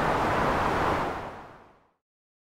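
A steady rushing noise hiss that fades out to silence about a second and a half in.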